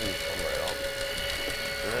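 Steady mechanical whine of a powered reel hauling a bottomfishing line up from deep water, with a faint voice over it.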